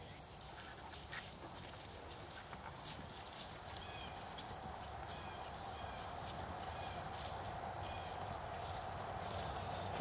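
Steady, high-pitched chorus of crickets chirring in late-summer field edges, with a few faint short chirps in the middle.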